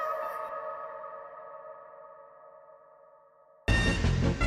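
Electronic music: a held chord of several steady tones swoops up in pitch at the start and slowly fades away. Near the end a loud beat with deep bass and drum hits cuts in abruptly.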